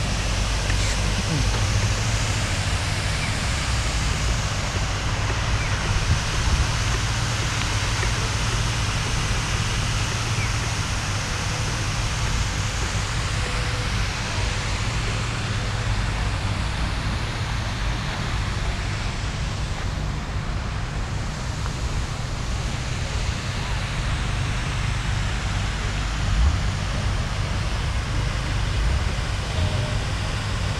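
Park fountain's water jets splashing in a steady rushing hiss, over a constant low rumble.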